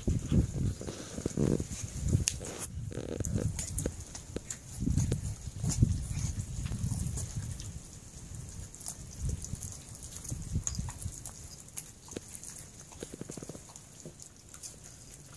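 Puppies chewing raw whole chicken on the bone: wet gnawing with many short crunching clicks and low, irregular grunting sounds, growing quieter toward the end.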